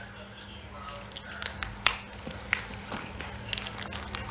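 Scattered small clicks and snaps as a fresh lotus seed pod is picked apart by hand and its seeds shelled and chewed, over a faint steady hum.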